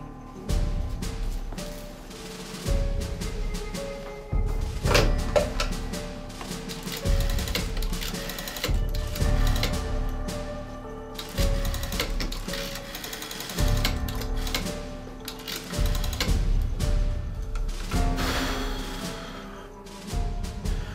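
Background music with held notes that shift in pitch over a low pulse that swells and fades every couple of seconds.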